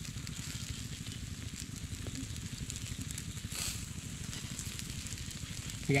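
Fish grilling on bamboo skewers over charcoal embers, with faint sizzling and a few small crackles, over a steady low rumble; the hiss swells briefly about three and a half seconds in.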